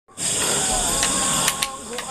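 A steady, high-pitched chorus of night insects, with two sharp clicks about a second and a half in.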